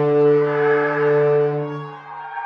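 Sampled cinematic brass from Hidden Path Audio's Battalion library for Kontakt, played from a keyboard: a held low brass chord that grows brighter in the middle and is released just before the end.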